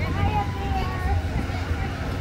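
Indistinct high-pitched voices, like children talking, over a steady low rumble.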